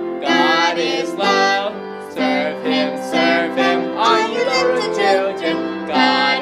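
A man and a woman singing a children's worship song together, with upbeat instrumental backing.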